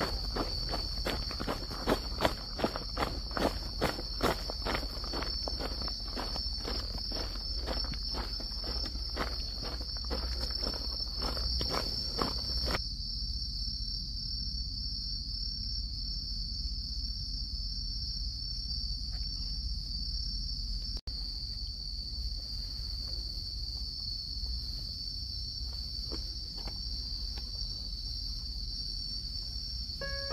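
Steady, high-pitched insect chorus. For the first dozen seconds footsteps sound about twice a second, then stop abruptly about 13 seconds in.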